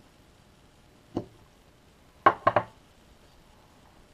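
A carving knife set down on a wooden tabletop: one sharp knock a little over a second in, then a quick cluster of three louder knocks a little past halfway.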